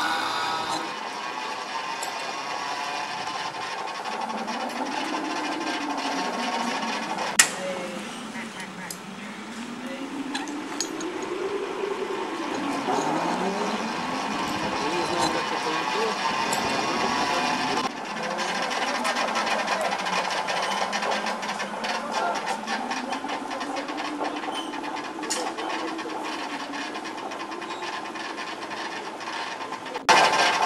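Whirring of a tower-jump cable descent rig, its pitch rising and falling over and over as the rider's speed changes, with wind rushing past the microphone and scattered clicks from the mechanism.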